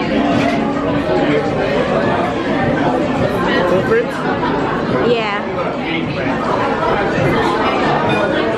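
Many people talking at once in a busy restaurant dining room, a steady babble of overlapping conversation.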